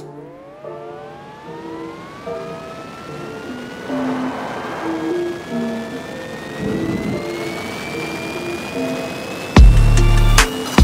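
Background music overlaid with a jet-engine spool-up sound effect: a whine climbing steadily in pitch. Loud deep booms start near the end.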